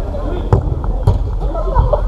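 Players shouting and calling to each other across a five-a-side football pitch, over a steady low rumble, with a sharp knock about half a second in and a lighter one about a second in.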